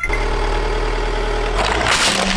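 Car engine running low and steady as the car creeps forward, then a crackling crunch building near the end as the tyre crushes a plastic toy car.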